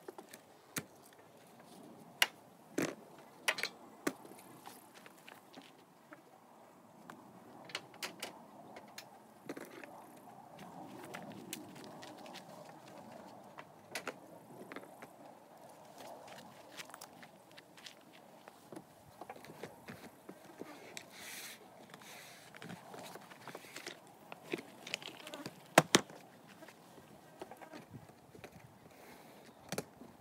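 Irregular knocks, clunks and scrapes of a plastic storage tote and gear being unloaded from a roof rack, with some rustling. The loudest is a close pair of sharp knocks near the end.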